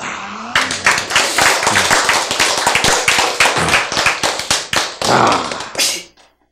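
A roomful of people applauding, a dense run of claps lasting about five seconds, with a short laugh near the end before the sound cuts off suddenly.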